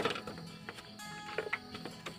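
A few sharp clicks and crackles as a peeled pink grapefruit is pulled apart by hand over a steel bowl, with a small cluster of clicks near the end.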